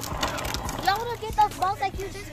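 Young children's high-pitched voices calling out, over the rattle of a small plastic ride-on trike's wheels rolling on concrete, which is clearest in the first second.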